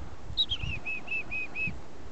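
A 'chick-a-dee-dee-dee' call: two high falling notes, then six even 'dee' notes at about four a second.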